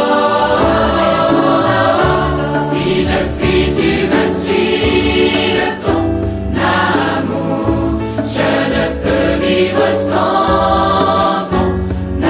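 French-language Christian worship song: a choir of voices singing over instrumental accompaniment.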